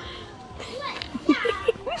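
Young children's voices: short high calls and chatter, busier in the second half.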